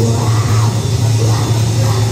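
Live rock band playing a heavy metalcore song, loud and dense: distorted electric guitars, drums and keyboard.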